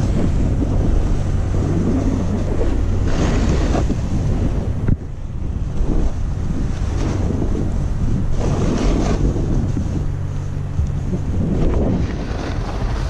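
Wind buffeting the microphone of a camera carried down the slope, a steady low rumble, with the snowboard's edge scraping over tracked, packed snow in several hissing swells as the board turns.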